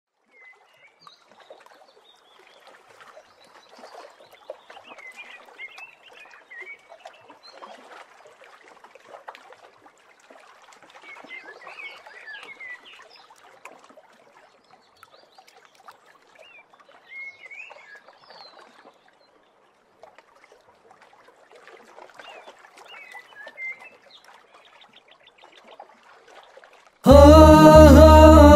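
Outdoor nature ambience: small birds chirping in short bursts every few seconds over a soft, fluctuating wash of lake water lapping at the shore.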